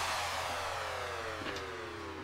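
Background music trailing off in a slow downward pitch glide, several tones falling together as it fades, with a faint click about one and a half seconds in.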